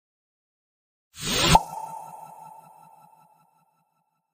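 Logo-reveal sound effect: a short rising whoosh about a second in, ending in a sharp hit that leaves a bright ringing tone with a quick pulsing undertone, fading away over about two seconds.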